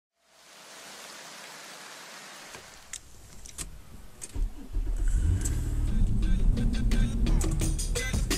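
A steady hiss, then a few sharp clicks and a Nissan car's engine starting about four seconds in, under music whose heavy bass beat builds toward the end.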